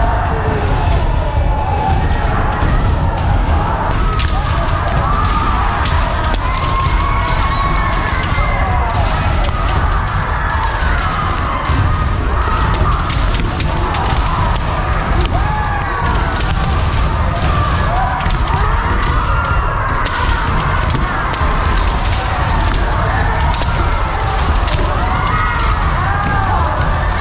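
Kendo practice by many pairs at once: bamboo shinai clacking against each other and against armour, feet stamping on a wooden floor, and high-pitched kiai shouts, a dense continuous din echoing in a large hall.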